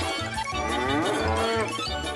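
A drawn-out cartoon vocal cry, about a second long, sliding in pitch, over background music with a steady bass beat.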